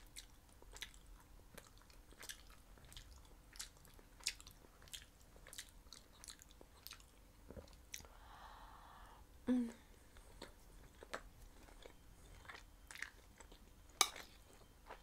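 Faint, close-miked chewing of meatballs: soft, irregular wet mouth clicks throughout. There is a brief breath about eight seconds in and a short hummed "mm" soon after.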